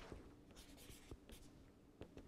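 Faint scratching of a pen writing on paper, a few light strokes in the first second or so, then near silence.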